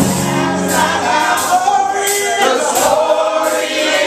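Gospel singing by a group of voices. The bass and drums drop away after about a second, leaving mostly the voices.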